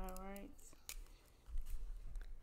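A voice finishing a short phrase, then soft handling of a spiral sketchbook and a gel pen: one sharp click about a second in, then low bumps and faint rustling as the pen is put to the page.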